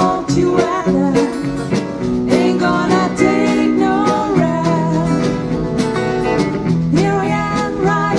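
Live band music: sung vocals over electric guitars and a steady drum beat.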